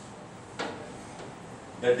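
Chalk striking and scraping on a chalkboard as a line is drawn: one short stroke about half a second in and a fainter one a little later. A man's voice starts near the end.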